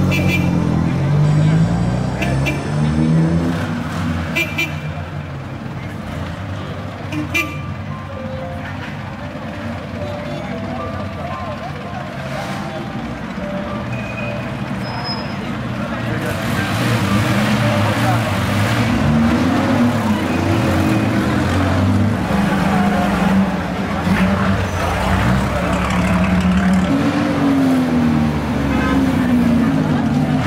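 A vintage race car's engine running and being blipped, its pitch rising and falling in several revs, over the chatter of a crowd. It gets louder and fuller about halfway through.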